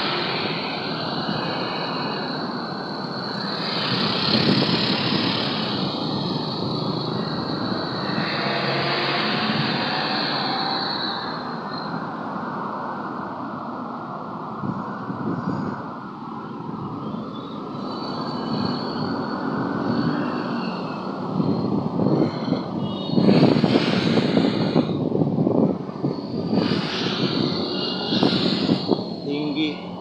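Busy city street traffic: a steady wash of engine and tyre noise from buses, cars and motorcycles, swelling louder as vehicles pass close, most strongly about three quarters of the way in and again near the end.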